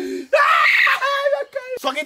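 A young man's high-pitched scream lasting about a second, followed by a brief shorter cry.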